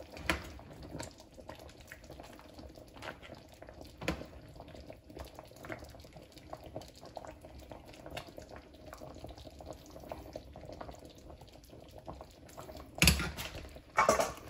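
Faint bubbling and dripping of the crab's pineapple sauce, with scattered light clicks and a louder knock about a second before the end.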